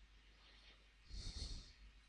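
Near silence, with one faint breath drawn in a little past a second in.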